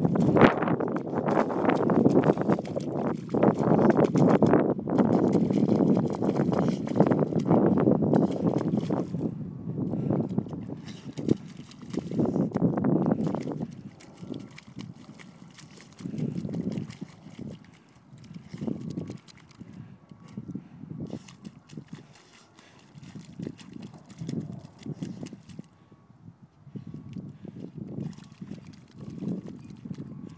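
A dog digging in wet mud with its front paws: a rapid run of wet scraping and splattering strokes, loudest through the first half, then slower, quieter bursts of pawing.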